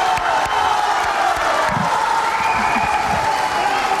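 Large studio audience applauding steadily.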